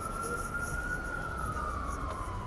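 Emergency vehicle siren wailing: one slow rise and fall in pitch that peaks about a second in and falls away near the end, over a low traffic rumble.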